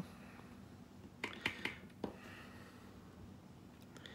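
Soft clicks of flute keys being pressed shut onto their tone holes: three or four close together a little over a second in, one more about a second later, and a faint one near the end.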